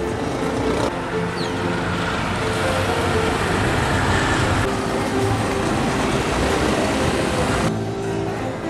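Road traffic noise, a dense steady rumble of passing vehicles, with background music playing underneath.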